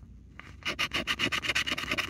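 Round plastic scratcher tool rubbing the coating off a scratch-off lottery ticket in rapid back-and-forth strokes, starting about half a second in.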